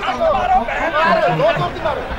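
Men's voices talking over a crowd's background chatter.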